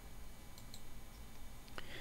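Faint computer mouse clicks over low room tone, one about three-quarters of a second in and another near the end.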